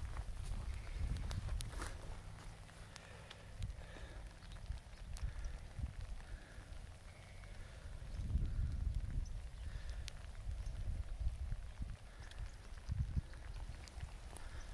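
Footsteps on wet, muddy ground over an uneven low rumble, with scattered sharp clicks.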